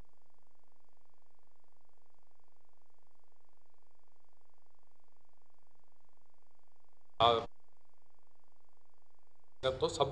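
A steady, even buzz in the mid range, finely pulsing, like hum on a microphone or audio line, with two brief snatches of a man's voice, one about seven seconds in and one near the end.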